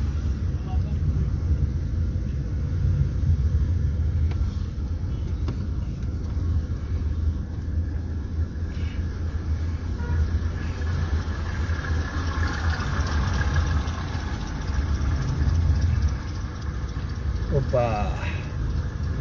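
Steady low rumble of a car heard from inside the cabin: engine and road noise with no sudden events.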